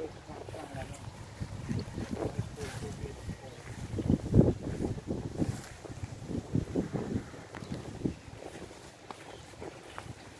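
Indistinct talking in short bursts over a low rumble of wind on the microphone, loudest about four seconds in.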